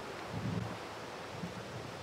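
A pause in speech filled by steady outdoor ambient noise, a wind-like hiss on the microphone.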